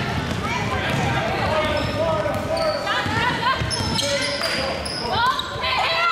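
Basketball game sounds on a gym's hardwood court: a ball being dribbled, sneakers squeaking sharply a few seconds in, and voices talking in the large echoing hall.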